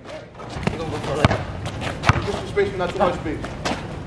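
A basketball bouncing on an outdoor asphalt court, several sharp thuds at uneven intervals, among players' voices and shouts.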